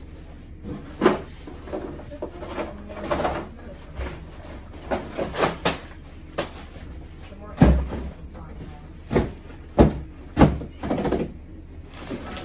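A long cardboard flat-pack furniture box being handled and opened: cardboard scraping and flapping, with a string of sharp knocks and thumps as the box is tipped and shifted, the loudest ones in the second half.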